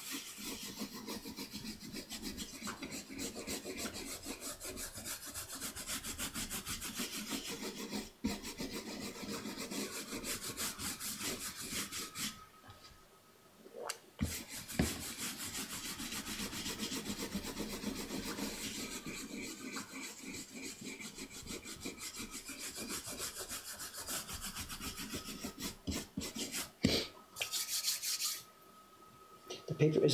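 A stiff bristle brush scrubbing a carved woodblock in rapid back-and-forth strokes, washing off the toner left from the pasted-down tracing. The scrubbing stops briefly twice, near the middle and just before the end.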